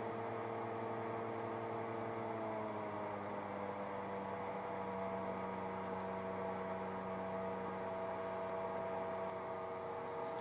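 Steady drone of twin piston aircraft engines in a Piper Chieftain flight simulator, with several tones sliding slightly lower about two to four seconds in as RPM is brought back toward cruise power.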